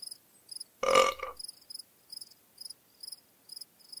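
Cricket chirping sound effect: short, high chirps repeating about two to three times a second. About a second in, a synthesized voice says "uh", the loudest sound.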